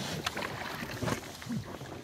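Water rushing and slapping along the hull of an S2 9.1 sailboat under sail, with a few short sharp slaps over the steady wash.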